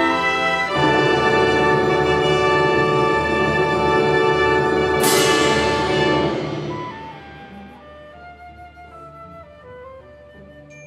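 Chamber orchestra playing together loudly in a sustained full chord, with a sharp percussion crash about five seconds in that rings away. After about seven seconds the full sound fades out, leaving a soft line of single held notes.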